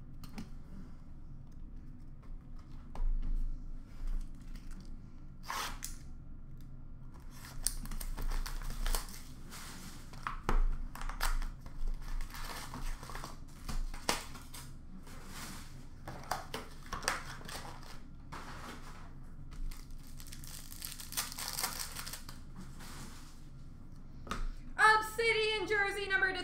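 Trading-card pack wrappers being torn open and crinkled, with cards handled between, in irregular bursts of rustling and light clicks. A man's voice starts near the end.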